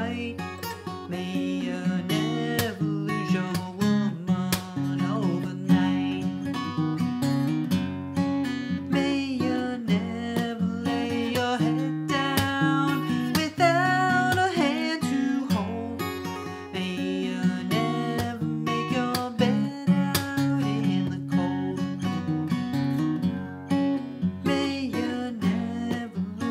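Fingerstyle acoustic guitar tuned to drop D and capoed at the fourth fret, picking an instrumental passage between sung verses of the song.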